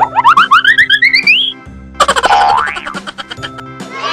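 Cartoon sound effects laid over a background music track: a quick run of notes rising in pitch for about a second and a half, then a springy boing-like glide that rises and falls about two seconds in.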